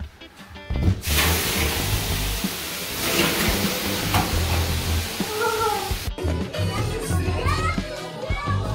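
Water thrown onto the hot stones of a sauna stove, hissing into steam: a loud hiss that starts suddenly about a second in and cuts off around six seconds. Background music with a low beat runs underneath, and voices come in near the end.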